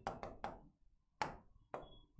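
Chalk tapping and scratching against a chalkboard while a word is written: about five short, sharp taps spread across two seconds.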